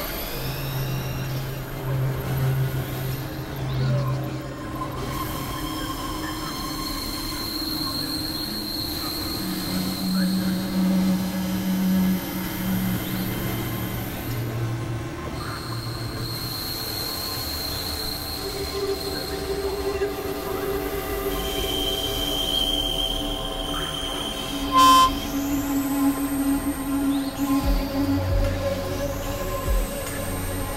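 Dense layered experimental electronic music: several sustained synth tones and drones overlapping and shifting every few seconds, with high rising glides near the end and one sharp click about 25 seconds in.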